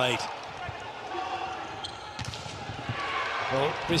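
A volleyball being struck a few times in a rally, sharp smacks about two seconds in, over steady crowd noise in an indoor arena.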